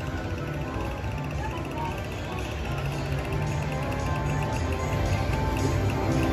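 Wheel of Prosperity slot machine playing its bonus-feature music after a bonus trigger: a steady electronic melody over a low beat, growing gradually louder.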